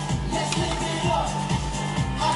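Pop dance music with a steady beat, playing through a mini hi-fi stereo system's speakers.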